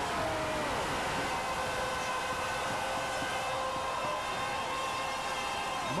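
Arena goal horn sounding one long, steady blast over a cheering crowd, signalling a goal just scored. The horn's pitch dips briefly as it starts, then holds for about six seconds.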